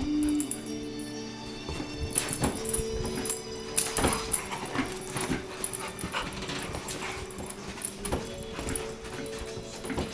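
A pit bull and a miniature pinscher play-wrestling: irregular scuffles and bumps with short whimpers. Steady background music plays throughout.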